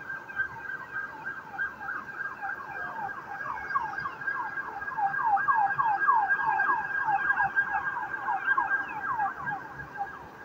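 Emergency vehicle siren on a rapid yelp: quick falling sweeps about four a second over a steady high tone. It grows louder toward the middle and eases off near the end.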